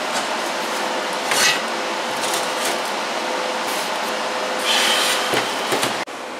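TIG welding arc on steel, a steady hiss with a faint constant hum, as a tube handle is welded onto the smoker door. The arc cuts off suddenly at the end.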